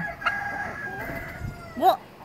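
Golden Sebright bantam rooster crowing: one long, high-pitched crow lasting about a second and a half.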